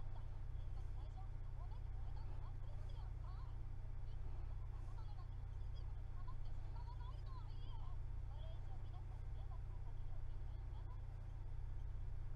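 A steady low hum throughout, with faint, indistinct voice-like sounds drifting over it.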